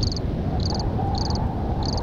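Building-site ambience in a theatre under renovation: a steady low rumble with a short high chirp repeating four times, about every 0.6 s.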